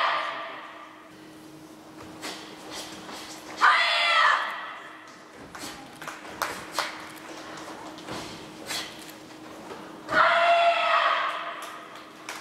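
Team kata performed in unison: loud shouted kiai from the three karateka together. One shout fades out at the start, another comes about four seconds in and a third about ten seconds in, with short sharp snaps and taps from their moves in between.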